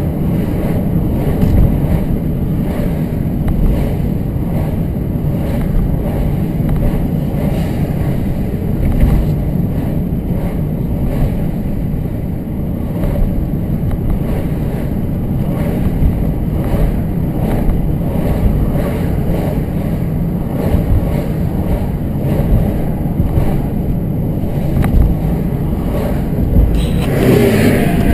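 Steady low rumble of a car driving at road speed, heard from inside the cabin: engine and tyre noise. A brief brighter hiss rises near the end.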